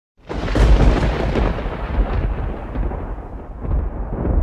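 Thunder sound effect: a loud rolling rumble with crackles that starts suddenly, is loudest in the first second and eases off toward the end.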